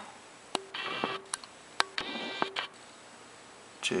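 Two short electronic beep-like tones about a second and a half apart, each just after a sharp click, with a couple more clicks between them.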